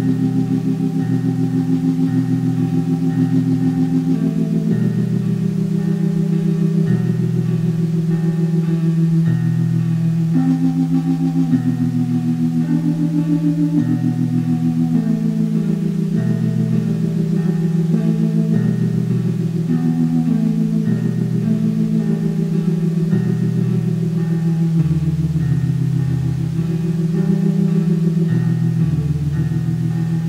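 Old-school dungeon synth music: slow, sustained synthesizer chords over a low note pulsing about once a second, with deeper bass notes near the end. The sound is dull, with little in the treble, as from a lo-fi demo tape.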